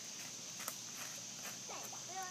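A few light footsteps on creek stones and dry leaves, heard as scattered sharp clicks over a steady high whine. A child's voice begins near the end.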